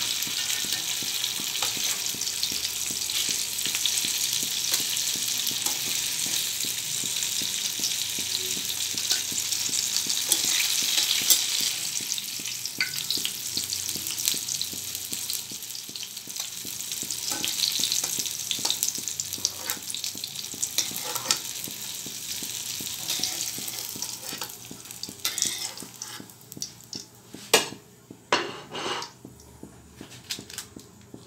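Tofu cubes frying in hot oil in a wok, a steady sizzle, with a spatula stirring and scraping through them. The sizzle fades in the last quarter as the pan empties, and a few sharp knocks come near the end.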